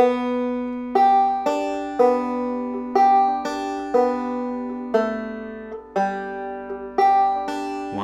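Five-string banjo in open G tuning, picked slowly in a two-finger thumb-lead style: single plucked notes about two a second, each left to ring. It plays a phrase of open-string rolls followed by a melody walking down from open B to A to open G, ending on the fifth and first strings.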